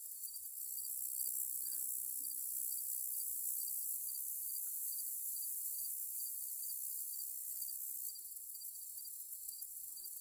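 Steady chorus of crickets and other insects in late-summer grass: a continuous high shrill hiss with a regular, rapid chirping pulse running through it.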